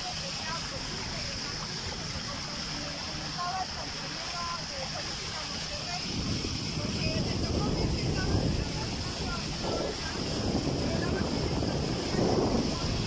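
Wind rumbling on the microphone over a steady hiss while moving across floodwater, the rumble growing stronger about halfway through. Faint short chirps sound in the first half.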